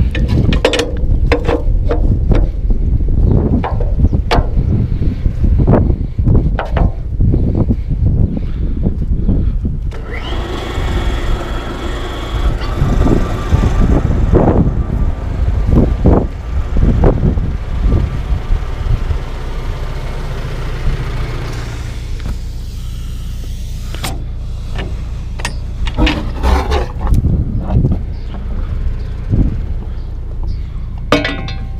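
Metal knocks and clanks as hoses and pipe couplings are handled and fitted at a tanker's pump outlet, over a steady low rumble. The knocks come thick in the first third and again near the end, with a smoother steady stretch between.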